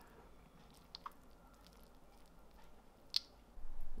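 Kitchen tongs lifting cheesy steak-and-onion filling from a frying pan: a few faint clicks and soft squishes, otherwise quiet. There are two light clicks about a second in and one sharper click about three seconds in.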